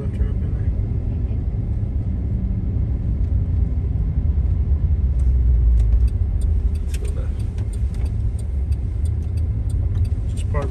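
Car interior road noise while driving: a steady low rumble of engine and tyres that swells briefly around the middle, with faint light ticks in the second half.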